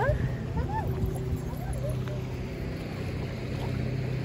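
Outdoor ambience: a steady low drone under wind noise on the phone microphone, with a few faint, short calls rising and falling in pitch.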